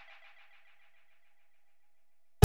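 Near silence: the last faint tail of the outro music dies away in the first half second, leaving nothing.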